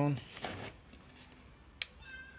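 A single sharp click near the end as the 12-volt adjustable power supply for the trap is switched on.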